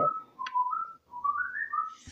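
Whistling: a run of short, clear notes stepping up and down in pitch, climbing higher toward the end.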